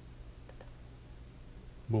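Two quick computer mouse clicks about half a second in, over a low steady hum.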